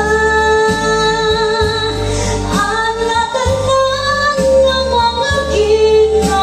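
A woman singing into a handheld microphone over backing music, holding long sustained notes.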